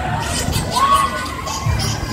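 Riders on a swinging fairground thrill ride shouting and screaming, over loud ride music with a pulsing bass.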